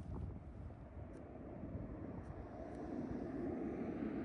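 A distant low rumble that swells over the second half, with a few faint clicks.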